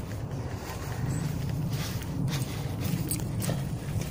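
Footsteps of a person walking along a dirt forest path, short irregular crunches under a steady low rumble.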